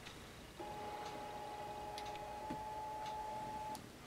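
Fusion splicer's fiber-positioning motors running with a steady whine of several tones for about three seconds, starting about half a second in, as the two cleaved fibers are driven toward each other for the arc calibration. A few faint ticks go with it.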